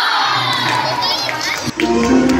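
Many children shouting and cheering together in one long held shout that slides slowly down in pitch, with a few higher squeals near the middle.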